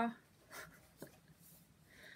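Quiet handling of a tarot card drawn from the deck: a soft sliding rustle about half a second in, then a single small click about a second in.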